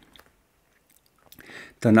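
A pause in a man's speech: near silence, then a few faint clicks and a short breath-like noise, and the voice starts again near the end.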